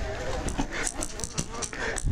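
Electric mountain bike clattering over rocky singletrack on a climb, with a run of sharp knocks and rattles over a steady rumble, and the rider breathing hard.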